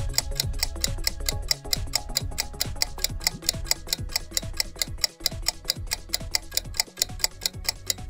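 Quiz countdown timer sound effect: rapid, even clock-like ticking, about five ticks a second, over background music.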